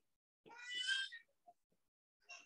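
A cat meowing once, a short call of under a second about half a second in, followed by a few faint ticks.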